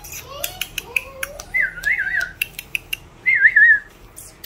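A person whistling with a high warbling tone, twice, over a string of sharp tongue clicks, calls meant to catch a puppy's attention.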